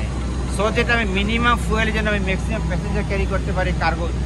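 A man speaking over a steady low mechanical hum.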